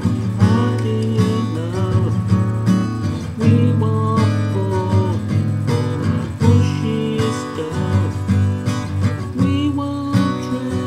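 Acoustic guitar playing chords in a steady rhythm, an instrumental passage between sung verses.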